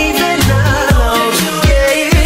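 Pop/R&B song playing in a sped-up, higher-pitched version, with a steady beat of deep kick drum and bass under melodic layers.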